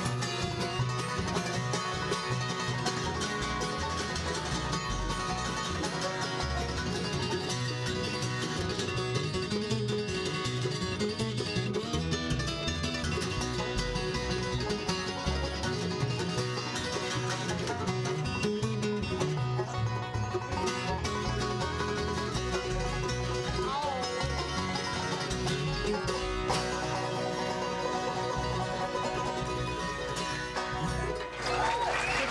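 Acoustic bluegrass band playing a boogie-woogie tune live: acoustic guitars, five-string banjo, mandolin and upright bass, with no singing.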